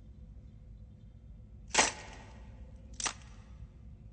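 Two sharp metallic clicks about a second apart, the first louder, as a chrome mechanical device is handled, over a low steady hum.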